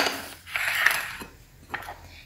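A metal spoon scraping and stirring in an aluminium pot of liquid pancake ingredients for about a second, followed by a few light clinks.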